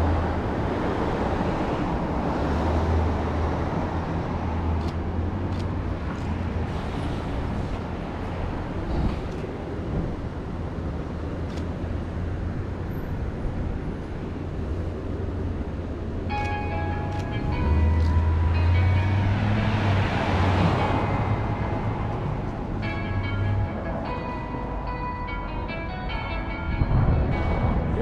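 Street ambience of passing traffic with a low wind rumble on the camera microphone; one vehicle passes loudest about twenty seconds in. Music with held tones comes in about sixteen seconds in.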